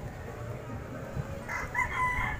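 A rooster crowing, starting about one and a half seconds in, over a low rumble.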